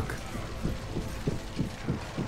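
Audio-drama sound effects: a rapid, irregular run of clicks and knocks, several a second, over a steady low rumble, like a scuffle of feet and clattering gear.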